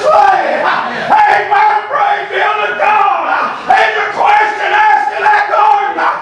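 A man's loud, strained chanted preaching: sing-song shouted phrases, each held on a high pitch for about a second, with short breaks between them.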